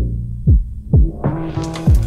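Hip-hop beat played on an Akai MPC 2500 sampler: deep kick drums that drop sharply in pitch, four of them in two seconds, over a held low bass tone, with a brighter, fuller hit joining in about the middle.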